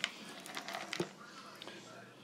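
A few faint clicks and taps of shelled pistachios being picked out of a plastic tub by hand, over a quiet room.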